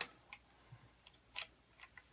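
A few light clicks and ticks from the tilting phone-clamp head of a Yunteng selfie stick being worked by hand, the loudest about a second and a half in.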